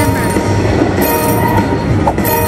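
100 Car Train slot machine bonus sound effects: a steady rolling-train rumble under chiming tones that flash about once a second as each rail car's value is added to the meter.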